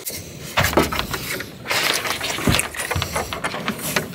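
Metal mounting hardware being handled on a roof-rack crossbar: irregular clicks, scrapes and rattles with a few low knocks as a solar panel's mounting foot is worked by hand.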